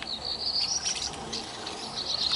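A high, continuous chirping trill that rises slightly in pitch, with a few faint clicks.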